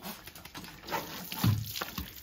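Water spraying from a garden hose nozzle and splashing onto a dog's wet back and the ground.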